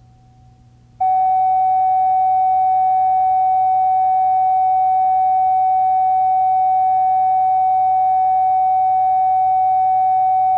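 Steady electronic line-up test tone on one pitch, switching on abruptly about a second in and holding unchanged, over a faint low electrical hum.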